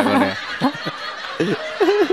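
Men laughing: a voice trails off at the start, then a run of short, separate chuckles.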